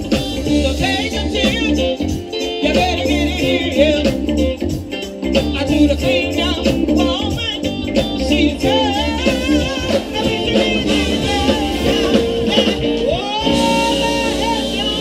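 A live blues and southern soul band through a PA system: singing over electric bass and drums with a steady beat, with one long held note near the end.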